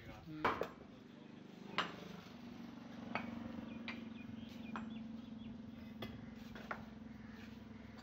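Bricklaying hand tools knocking on bricks and mortar: about six sharp, separate clinks, the loudest about half a second in. A low steady hum runs underneath from about two seconds in.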